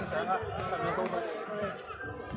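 Several people talking over one another, overlapping voices with no single clear speaker.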